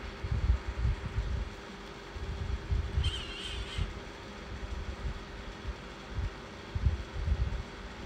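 Irregular low thumps and rumble of handling noise on the streaming microphone, over a steady low hum, with a faint brief high tone about three seconds in.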